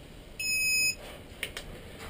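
Turnigy 9X radio-control transmitter giving a single half-second electronic beep as it is switched on, followed by a light click about a second later.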